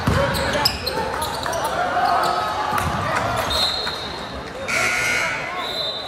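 A basketball thumping on a hardwood gym floor, with sneakers squeaking on the court and players' and spectators' voices echoing around the hall.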